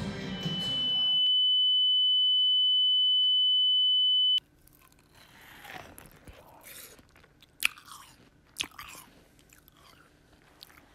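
A loud, steady high-pitched electronic tone swells in over the first second, holds for about three seconds and cuts off suddenly. Then comes close-miked biting and chewing of a brownie: wet mouth sounds with a few sharp crunches in the last few seconds.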